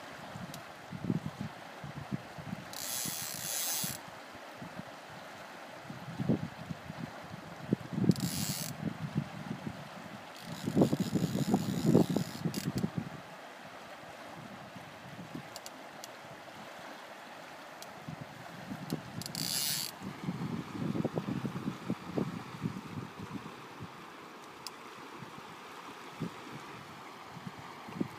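Fly reel's click-and-pawl ratchet clicking in several bursts as line moves on and off the spool, the longest burst about two seconds, over the steady sound of a river.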